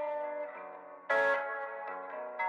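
Instrumental intro of a rap track: a guitar playing ringing, sustained notes, with a louder, brighter note or chord struck about a second in.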